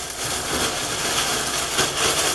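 Thin clear plastic cap crinkling and rustling as it is pulled over the hair and pressed into place by hand.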